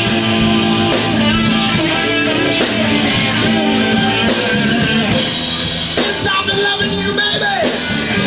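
Live rock band playing: distorted electric guitars over a drum kit, loud and without a break.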